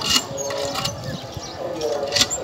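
A hand-operated water pump being worked by its lever handle, giving metal clanks: a sharp one just after the start and a softer one a little under a second in.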